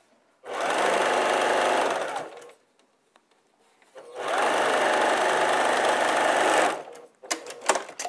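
Electric sewing machine stitching a quilt-block seam in two steady runs of about two seconds each, with a short pause between them. A few sharp clicks follow near the end.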